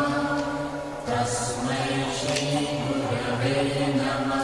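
Devotional mantra chanting in long held tones, with a brief pause about a second in.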